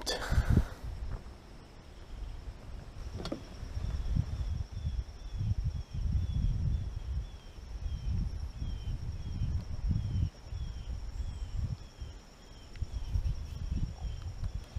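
Quiet outdoor ambience on the water: uneven low rumbling with a faint steady high hum, and a run of short, falling chirps about three a second from a few seconds in until near the end.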